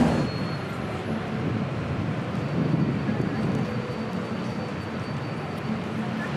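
Steady rumble of city traffic, even throughout with no distinct events standing out.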